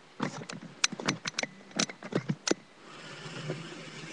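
Handling noise: a quick run of sharp clicks and knocks, then a rustling shuffle as the webcam is picked up and moved.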